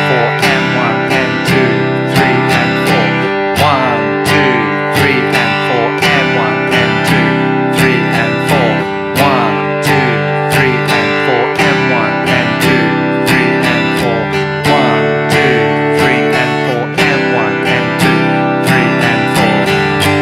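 Acoustic guitar strummed steadily in the two-bar 'common push' strumming pattern, the chord changing on the 'and' after four, an eighth note ahead of the bar line.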